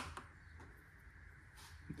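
Near silence: faint room tone, with one soft brief rustle about one and a half seconds in as small metal rocker-arm parts are handled.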